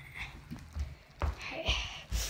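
A person's footsteps while walking, a series of dull thumps about two a second, with light rustling between them.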